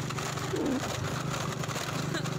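Small motor scooter's engine running steadily while riding. A short, low voice-like sound comes about half a second in.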